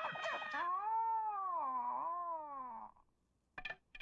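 Bruce Lee's signature high-pitched, drawn-out battle cry: one long wailing yell that wavers up and down in pitch and stops about three seconds in. A few short clinks follow near the end.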